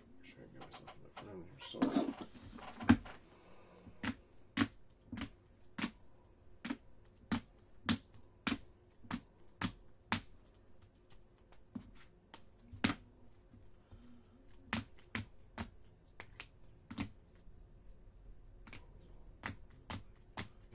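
Stiff chrome trading cards being dealt one at a time onto stacks on a table, each landing with a sharp click, about two clicks a second. A rougher rustle of cards being handled comes early, with the loudest click just before 3 s.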